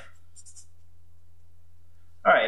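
Felt-tip marker writing on paper, a few faint scratchy strokes about half a second in, over a steady low hum.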